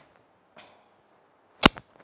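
A single sharp smack about one and a half seconds in, with a fainter tap right after it, in an otherwise quiet pause.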